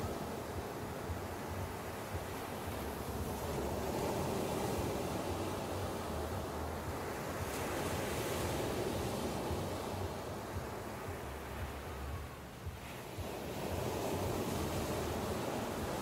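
Ocean surf breaking and washing up a sandy beach: a steady rush that swells and ebbs with each wave, easing briefly about twelve seconds in.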